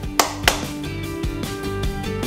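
Two sharp hand claps about a third of a second apart, followed by background music with steady held notes.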